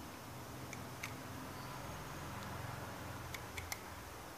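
A few light clicks from a spinning reel's bail arm and line roller being handled, one about a second in and three close together near the end, over a low steady hum.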